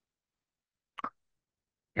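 Near silence, broken once about a second in by a single brief soft pop: a short mouth noise on a headset microphone.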